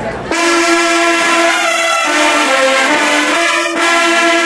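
A full marching-band brass section of trumpets, trombones, mellophones and sousaphones comes in together about a third of a second in and holds loud sustained chords, moving through a few chord changes.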